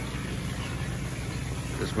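Engine idling steadily, a low even hum.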